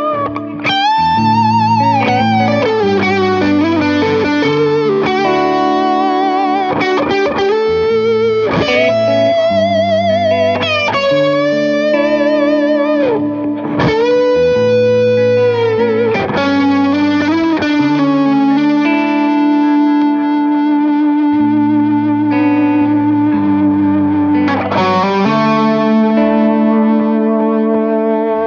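Overdriven lead electric guitar from a 2018 Gibson Firebird Standard with mini humbuckers, played through a Mesa Boogie Mark V:35 amp. It plays a melodic solo of long sustained notes with wide vibrato and string bends over a steady low chordal backing that changes every couple of seconds.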